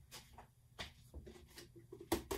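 Near silence with a few faint, scattered knocks and rustles of someone moving about and handling things.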